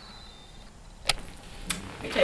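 Movement and handling noise: two short sharp clicks a little over half a second apart, over low rustling, with a faint high steady tone in the first half.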